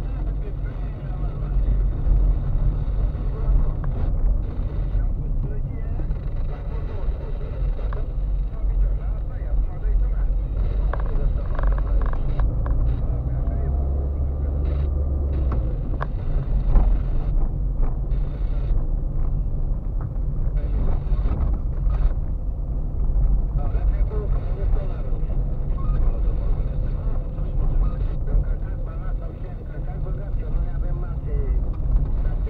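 Car driving on a narrow back road, heard from inside the cabin: a low, steady rumble of engine and tyres, with one sharper knock about seventeen seconds in.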